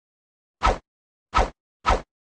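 Three short pop sound effects on an animated end card, the first about two-thirds of a second in and the last right at the end, with the last two closer together.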